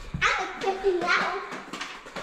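Excited, high-pitched voices, not made out as words.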